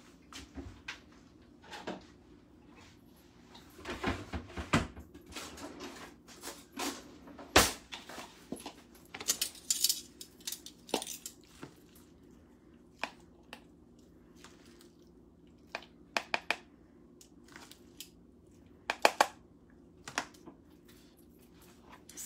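Metal tongs clicking and scraping against a plastic container and bowl as salad is served, in irregular short strokes; the sharpest click comes about seven seconds in, and two more come close together near the end.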